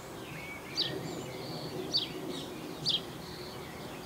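A small bird calling with short, quickly falling high chirps, about one a second, three times, over a faint steady low background hum.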